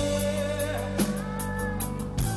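Live rock band playing through a PA: drum kit with steady cymbal and drum strikes over held guitar and bass chords, and a sung line that starts on "I" and holds a long note.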